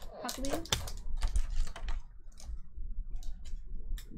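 Pokémon trading cards and clear plastic packaging being handled: a run of quick, small clicks and rustles as cards are flipped through by hand.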